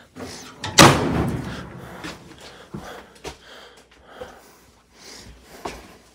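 A pickup truck's cab door slammed shut once about a second in, the bang ringing out briefly, followed by a few light clicks and knocks.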